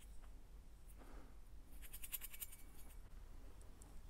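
Faint handling noise of small parts and wiring being worked by hand: a short run of light scratchy clicks about two seconds in.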